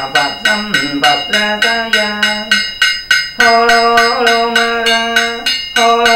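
Buddhist chanting by a male voice, in long held and gliding notes, over a wooden fish (mõ) struck steadily about three times a second.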